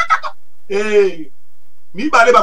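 A man's voice making one drawn-out vowel sound of about half a second, about a second in, between phrases of preaching.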